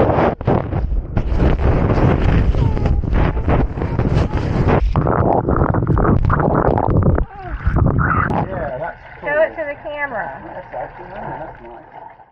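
Handling noise from fingers rubbing and knocking on a wet action camera right at its microphone: a loud, dense rustle and rumble with many knocks. About seven seconds in it drops away, leaving a quieter stretch with high, wavering voice-like sounds.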